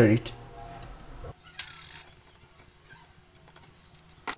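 Faint small clicks and scrapes of hands working at a small circuit board, with a short hiss about one and a half seconds in; otherwise mostly quiet.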